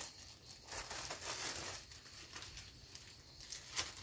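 A plastic bag crinkling quietly and irregularly as it is handled for packing dried thyme, with a sharper crackle just before the end.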